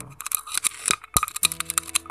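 Quick, light clicks and taps throughout, with background music of steady held tones coming in about a second and a half in.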